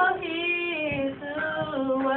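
Girls singing a gospel song into a microphone, holding long notes that step down in pitch.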